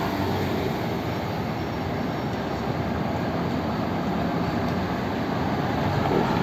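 Steady rushing ambient noise, even throughout, with no distinct events.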